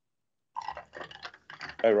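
Men talking over a video call: dead silence for about half a second, then quiet speech, rising into a louder "Oh" near the end.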